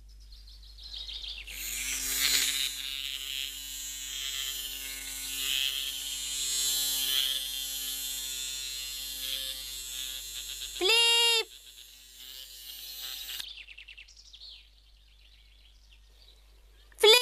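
Cartoon sound effect of a bee's wings buzzing in flight: a steady buzz that starts about a second and a half in and runs for about twelve seconds before fading. Near the end comes a short, loud, high cry.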